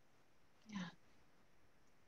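Near silence: room tone in a pause between speakers, broken once about three quarters of a second in by a short, faint vocal sound.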